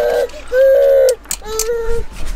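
A baby fussing and wailing because she is upset: three short, steady-pitched cries, the middle one the longest and loudest.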